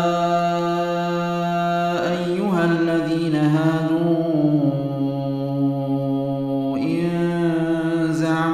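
A man's solo voice chanting Quran recitation in the Warsh reading, drawing out long sustained notes that bend slowly in pitch, with brief breaks for breath about two seconds in and near seven seconds in.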